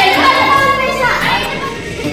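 A group of boys shouting and singing together over music, their voices thinning out in the second half.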